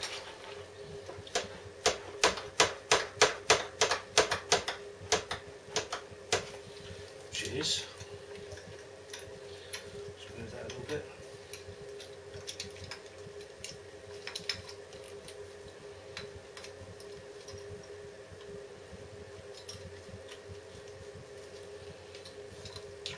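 Rieju 125 front brake lever being pumped to push a piston out of the loose front caliper: a quick run of sharp clicks, about four or five a second, lasting a few seconds, then only scattered faint ticks. A steady hum runs underneath.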